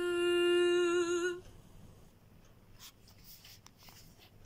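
A solo woman's voice holding the last note of a sung French psalm antiphon for about a second and a half, wavering at its end, then dying away to a quiet room with a few faint clicks.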